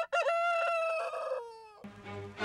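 A rooster crowing once: one long call of about a second and a half that ends in a falling note.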